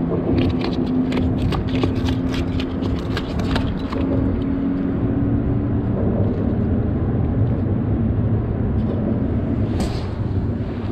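A motor runs steadily in the background, a low rumble with a held hum that fades out about six seconds in. Over it comes a quick run of sharp clicks and taps in the first four seconds.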